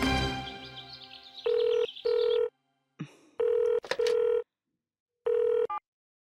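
Mobile phone ringing with a steady electronic tone in pairs of short rings, five rings in all; the fifth breaks off short near the end as the call is answered. Background music fades out at the start.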